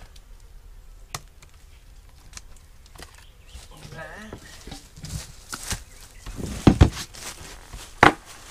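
A loose wooden board being handled and put down: scattered knocks and a sharp click, then a few heavy thumps about six to seven seconds in.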